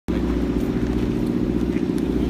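A parked tour bus's engine idling with a steady low hum.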